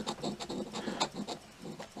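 A silver coin scraping the coating off a scratch-off lottery ticket in short, irregular strokes.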